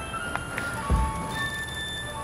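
Clear ringing tones at several different pitches, overlapping and fading like chimes, with a dull low thump about a second in.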